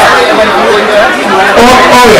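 Loud, close chatter of several people talking at once, with no clear other sound.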